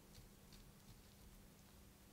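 Near silence: faint soft taps and swipes of a gloved fingertip on a smartphone touchscreen, with two light ticks in the first half second over a low steady hum.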